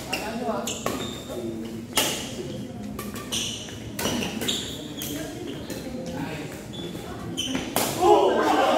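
Badminton rally: about six sharp racket strikes on the shuttlecock, a second or so apart, echoing in a large hall. Short high shoe squeaks on the court floor and background voices come between the strikes.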